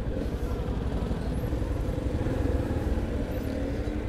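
Motorcycle engine running at low idle-like revs as the bike creeps along, a steady low rumble.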